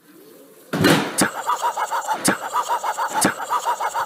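Self-balancing hoverboard in motion on a tile floor. A loud bump comes about a second in, then sharp knocks and a fast run of short chirping squeaks.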